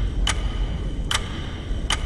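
Three short ticks from a time bomb's countdown timer, a little under a second apart, over a low drone.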